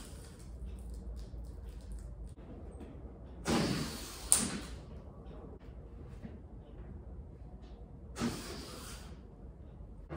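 Air rushing out of an inflated balloon as it is let go and shoots along a string, heard twice, each hiss lasting about a second. There is a sharp click during the first hiss.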